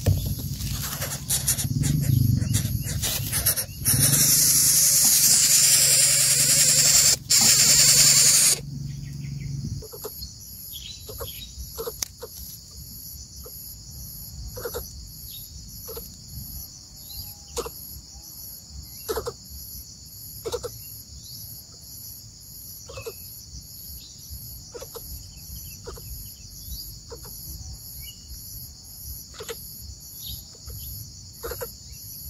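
Loud rustling and flapping of a coucal chick's wings against its dry grass nest for the first eight seconds or so. Then a steady chirring of crickets with a fast-pulsing high insect call and scattered short soft ticks.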